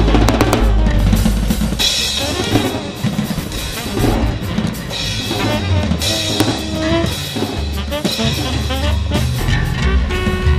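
Free-improvised jazz drum kit playing busy rolls with snare, bass drum and cymbal hits, densest and loudest in the first second, over bass notes low underneath.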